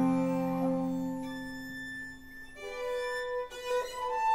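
A chamber ensemble with strings plays a live film score. Held string notes die away over the first two seconds, then the violins come back in with higher sustained notes.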